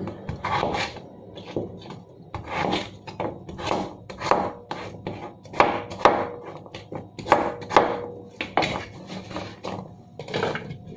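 A kitchen knife chopping a raw carrot into chunks on a cutting board: irregular crisp knocks of the blade through the carrot onto the board, about one or two a second.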